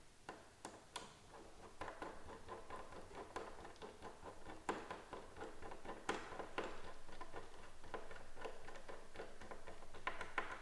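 Phillips hand screwdriver driving screws into a pocket door lock: faint, irregular ticks and scrapes of the screw turning, with a few sharper clicks scattered through.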